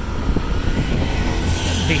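Street traffic: motorbike and tuk-tuk engines running on a city street, a steady low rumble.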